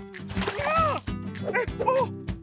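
Cartoon background music, over which an animated character gives short wordless cries. The first is a rising-and-falling yelp with a hiss-like burst under it, about half a second in; a shorter cry follows near the end.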